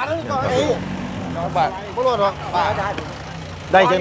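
Several people talking over a low, steady engine hum, typical of a livestock truck idling.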